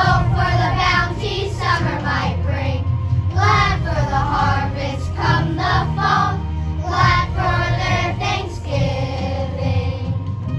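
Children's choir singing together over instrumental accompaniment with a steady bass line.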